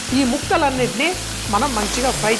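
Mutton pieces sizzling in hot mustard oil in a pan while being stirred with a wooden spatula, under background music with a melody.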